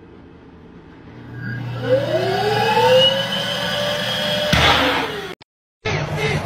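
Electric hand dryer starting up: its motor whine rises in pitch about a second and a half in, then it blows loudly and steadily. A short burst of rushing noise comes near the end before the sound cuts off.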